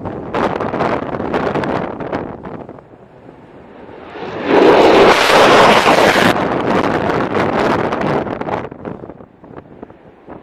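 Fighter jet engines running at takeoff power: a dense rushing jet noise that swells sharply about four and a half seconds in, stays loudest for a couple of seconds, then eases off toward the end.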